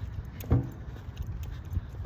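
Low rumble with a single sharp knock about half a second in: handling noise on a hand-held phone microphone outdoors.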